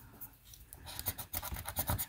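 Scratch-off lottery ticket being scratched with the edge of a casino chip: a quick run of short, dry scraping strokes that starts about a second in.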